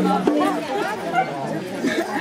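Folk music with held low notes breaks off just after the start, followed by several women's voices chattering over one another.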